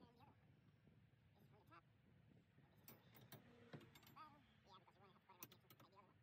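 Near silence: faint outdoor background with faint distant voices and a few soft clicks.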